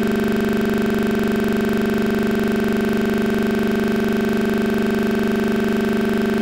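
A steady electronic drone of several held pitches sounding together, unchanging in pitch and loudness.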